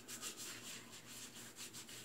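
Shaving brush swirling lather over a stubbled face, a faint soft scrubbing in quick strokes, several a second.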